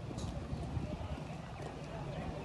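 Warmblood mare's hoofbeats cantering on sand arena footing, dull and irregular under a low background rumble.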